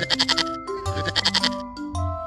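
A goat bleating twice, each bleat a quick quavering call: once at the start and again about a second in. Children's background music plays underneath.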